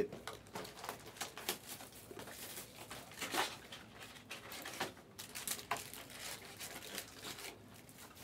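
Faint, scattered clicks and rustles of hands handling trading-card packaging and boxes on a table, a few handling knocks standing out.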